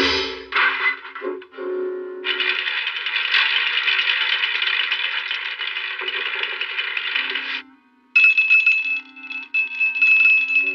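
Orchestral cartoon score, with a long clattering rattle of gumballs spilling out of a gumball machine's chute from about two seconds in until near eight seconds. After a brief gap the music returns with a held high note.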